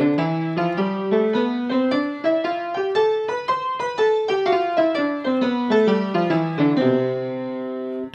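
Upright piano, both hands playing a scale exercise in even steps. The notes run up for about three and a half seconds, come back down, and end on a held note near the end.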